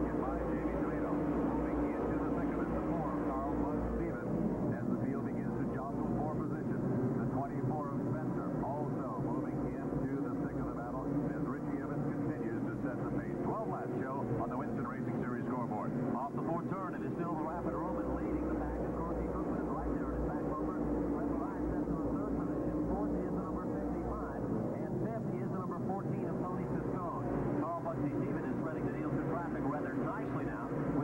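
A field of modified stock cars running laps together, their engines blending into one steady drone that holds an even level, with voices mixed in.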